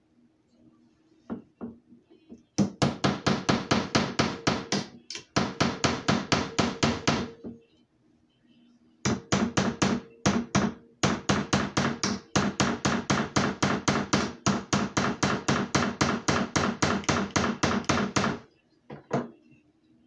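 Rapid metal-on-metal tapping, about five strikes a second in two long runs with a short break between: a nail is driven into the steel socket of a frog gig head, struck with a pair of vise grips used as a hammer.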